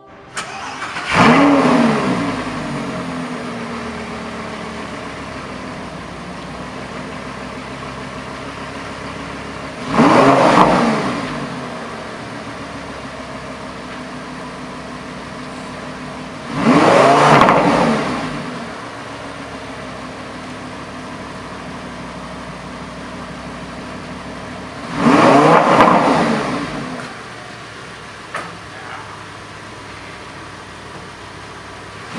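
A Lamborghini Gallardo's 5.2-litre V10 fires up about a second in with a rev, then idles steadily. It is blipped up and back down three more times, roughly every seven to eight seconds, each rev lasting about two seconds.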